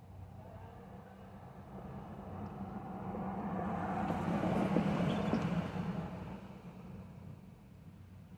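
A car driving past, its tyre and engine noise swelling to a peak about halfway through and then fading, over a steady low engine hum.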